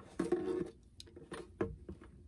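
A few light, separate clicks and crinkles of a thin clear plastic bottle being handled and repositioned with a craft knife against it.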